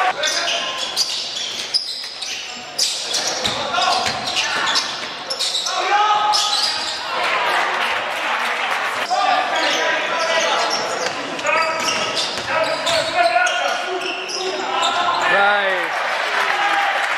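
Basketball game in a gym: the ball bouncing on the wooden court in repeated sharp knocks, mixed with players' shouting voices and short squeals, all echoing in the hall.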